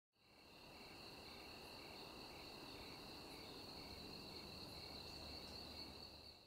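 Faint insect chirping: a steady high-pitched trill with a softer chirp repeating about twice a second.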